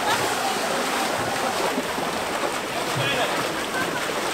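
Water splashing and churning as a team of firefighters paddles a narrow wooden boat hard through a pond, with voices shouting over it.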